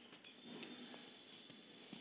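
Near silence: room tone with a few faint light clicks.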